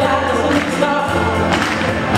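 A woman singing lead vocals into a microphone over a live band.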